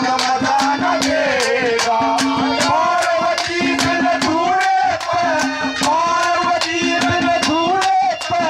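Live Haryanvi ragni folk music: harmonium and drum accompaniment, with the drum striking a steady beat about four strokes a second under a held low note and a melody line that slides up and down.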